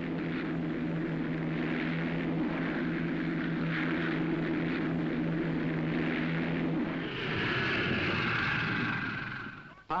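Aircraft engines running with a steady drone; about seven seconds in the sound changes to a higher, hissier tone, then fades out near the end.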